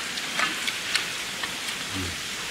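A steady hiss, with a few faint light clicks scattered through it.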